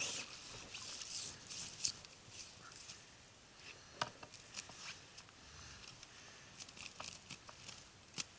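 Irregular sharp clicks and short scuffling rustles of fishing gear being handled, densest in the first two seconds, with a sharp click about four seconds in and a cluster of clicks near the end.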